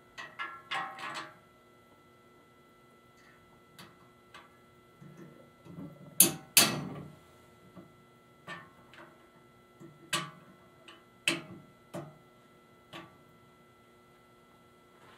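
Clicks and knocks of quick corner hardware being fitted onto the posts of a raised-floor air grate panel, with the quick nuts pressed down by a hand tool. A quick cluster of clicks comes at the start, two loud sharp snaps about six seconds in, and single taps follow through the rest.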